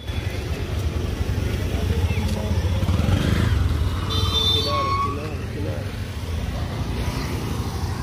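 An auto-rickshaw's small engine running as it pulls away down the road, loudest a couple of seconds in, with brief voices about halfway through.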